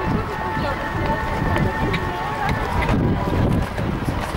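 Horse cantering on a sand arena, its muffled hoofbeats mixed with wind rumble on the camera microphone.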